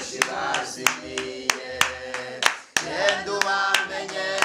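A small group of voices singing a worship song with hand claps in time, about three claps a second. The singing breaks off for a moment past the middle and comes straight back.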